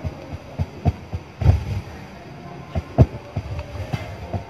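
Irregular soft knocks and taps from a marker writing on a whiteboard on a wooden stand. The heaviest thump comes about one and a half seconds in and a sharp knock at three seconds.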